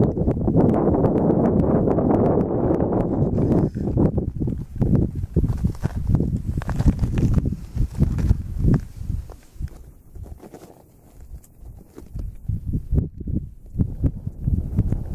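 Wind buffeting the camera microphone with a low rumble, steady for the first few seconds, then in irregular gusts and thuds that die down for a couple of seconds near the end before picking up again.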